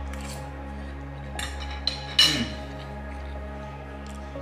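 Steady background music, with a few short clinks of cutlery, the loudest about two seconds in.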